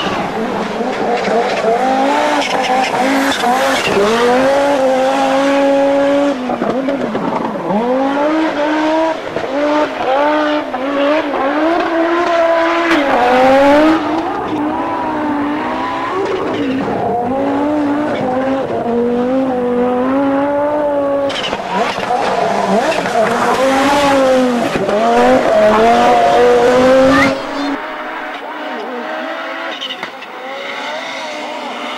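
Audi Quattro Group B rally cars' turbocharged five-cylinder engines at full throttle, the pitch climbing and dropping over and over as the cars change gear. The sound changes abruptly about halfway through and again a few seconds before the end, as one pass gives way to another.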